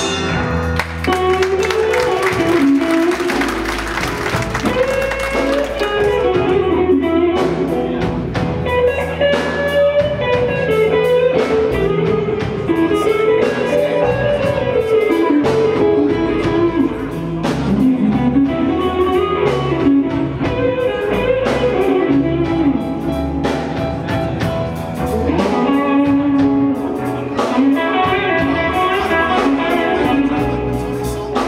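Live blues band playing, an electric guitar leading with a bending melodic line over bass and drums.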